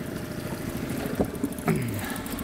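Boat's outboard motor running steadily at trolling speed, a low, even drone. A short click about a second in and a brief voice sound near the end.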